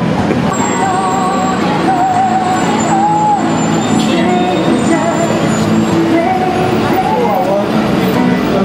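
Steady city street noise of traffic with people's voices over it.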